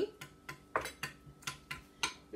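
A spoon stirring thick salsa and Greek yogurt in a bowl, knocking and scraping against the bowl's side in a series of light clinks, about three a second.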